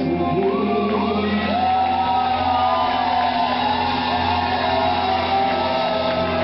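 Live pop concert music playing loud through the hall's PA, with the audience screaming and whooping over it.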